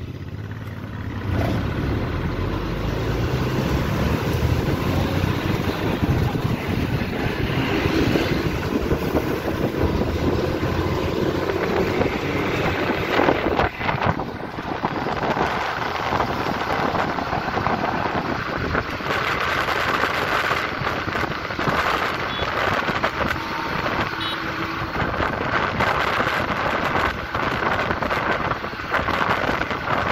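A bus driving along a road, heard from an open window: a steady mix of engine and tyre noise with wind on the microphone.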